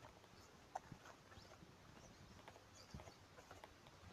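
Near silence, broken by a few faint knocks and rustles of a phone being handled against clothing, about a second in and again near three seconds in.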